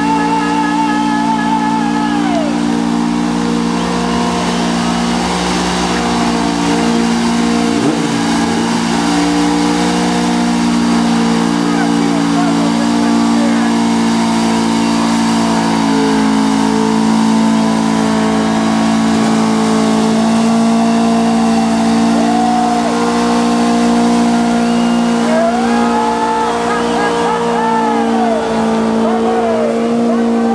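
Volkswagen Type 2 bay-window bus engine held at steady, high revs through a long burnout, its rear tyres spinning on the tarmac. A few wavering squeals come near the end.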